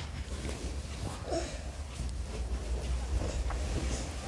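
Faint, scattered clinks and taps of a metal ladle against a large aluminium soup pot, over a steady low hum.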